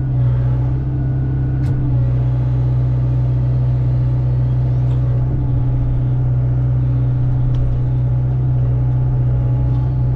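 Hyundai excavator's diesel engine running steadily at working speed while the grapple handles a log.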